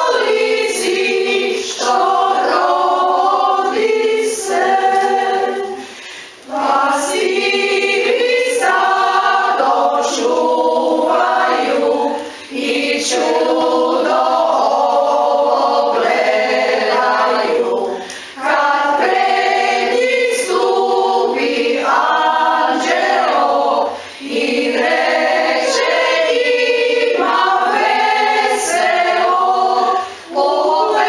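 Women's choir singing a Christmas song a cappella in several parts, in phrases separated by short breaths about every six seconds.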